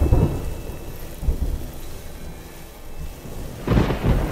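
Thunder rumbling low, easing off in the middle, then a loud crash of thunder just before the end.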